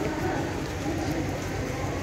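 Low, soft cooing calls repeated a few times over steady outdoor background rumble.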